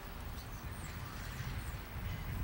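A few short, faint, high chirps from small birds over a low outdoor rumble that grows louder toward the end.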